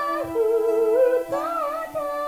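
A woman singing a pop song to her own piano accompaniment: held piano chords under a wavering vocal line, with a short break in the voice a little past a second in before the next phrase.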